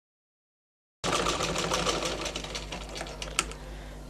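Silence for about a second, then a domestic sewing machine stitching: a fast, even clatter of needle strokes that fades as the machine slows, with one sharp click near the end.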